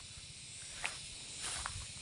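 Faint outdoor ambience: a steady high hiss over a low rumble, with two soft ticks, one about a second in and one near the end.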